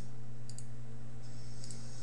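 Two short clicks of a computer mouse, about a second apart, over a steady low hum.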